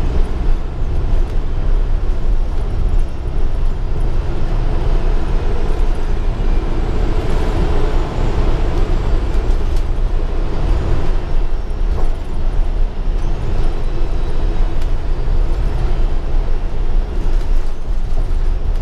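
Interior ride noise of a 2015 Gillig Advantage transit bus under way: a loud, steady low rumble of drivetrain and road, with a faint click about twelve seconds in.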